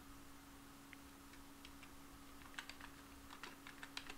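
Faint computer keyboard typing: a few scattered keystrokes, then a quicker run of keystrokes in the second half, over a steady faint low hum.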